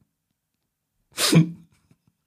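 Silence for about a second, then one short explosive burst of breath and voice from a person, dying away within half a second.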